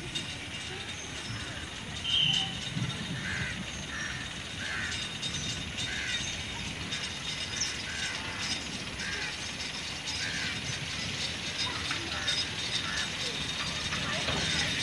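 A continuous rapid clicking, ratchet-like rattle, with a short chirp repeating about once a second.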